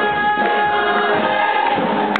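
Full cast chorus singing over a live band, holding long sustained notes as the number closes.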